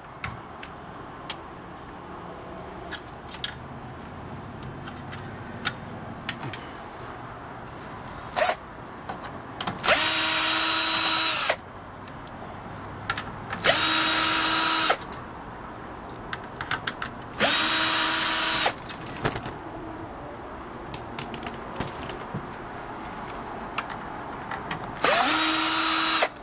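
Cordless 20-volt drill-driver backing out the screws that hold a TV's power supply board, in four short runs of a second or so each. Each run spins up, holds a steady whine and winds down as each screw comes out.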